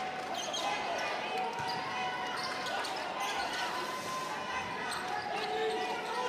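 Steady crowd noise of many voices in an indoor arena, with a basketball being dribbled on a hardwood court.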